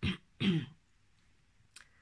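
A woman clearing her throat: two short rasps in the first second, then quiet with a faint click near the end.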